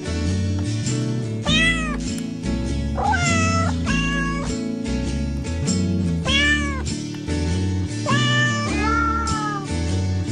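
Cat meows over background music: about six meows, each rising then falling in pitch and lasting half a second to a second, come one after another over steady music notes.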